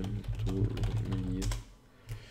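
Typing on a computer keyboard: a quick run of keystroke clicks that stops about one and a half seconds in.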